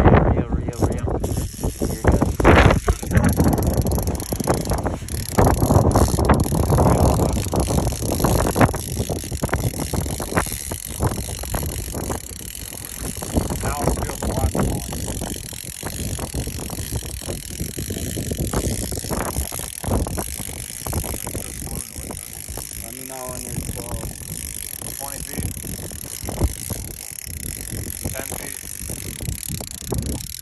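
Strong wind buffeting the microphone, heaviest in the first dozen seconds and then easing, with scattered clicks and knocks.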